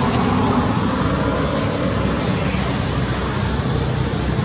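Loud, steady, unbroken rumbling background noise with a low hum running under it.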